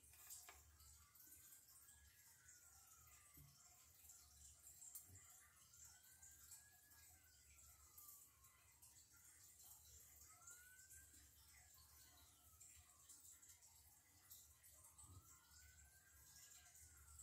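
Faint emergency-vehicle siren in the distance, a slow wail that rises and falls in pitch about four times, each sweep lasting some four seconds.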